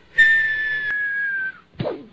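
A whistle held steady for over a second, sliding slightly down in pitch, sounding as a man topples face down onto a table. Near the end comes a brief low sound as he lands.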